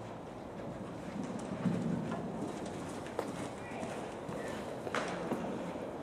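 Hoofbeats of a cantering horse on an indoor arena's sand surface, muffled and faint, with a couple of sharper knocks.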